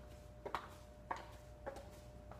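High-heeled shoes clicking on a hard tiled floor as a woman walks, three steps about 0.6 seconds apart.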